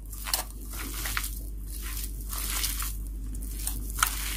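Hands mashing and mixing boiled potatoes with chopped onion, coriander and green chilli on a steel plate: a run of irregular squishing strokes.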